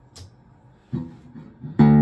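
A short click as the guitar's chorus effect is switched off, then a brief soft string sound about a second in. Near the end the open low string of a semi-hollow electric guitar, tuned down a whole step, is struck and rings out loud and sustained, without chorus.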